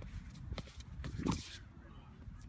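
A hammer thrower's shoes scuff and knock on the concrete circle through his turns, then a short loud grunt at the release about two-thirds of the way in, over a steady low wind rumble.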